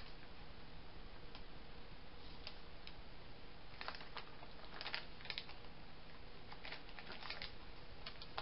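Faint, scattered crinkles and rustles of thin plastic packaging being peeled off a sheet of clear stamps, a few small crackles every second or so.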